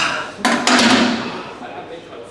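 A man's loud shout of effort while straining through a heavy incline bench press, with a sharp knock about half a second in. The shout fades by about a second and a half.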